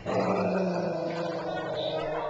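A dog growling in one long, steady growl while two dogs tug over a plush toy, the growl of a dog guarding a toy it won't share.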